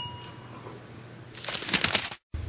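A bell-like chime rings and fades away over the first half second. About one and a half seconds in, there is a short, noisy sip of tea from a glass mug.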